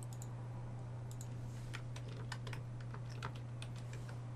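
Faint, irregular clicking of a computer keyboard and mouse over a steady low electrical hum.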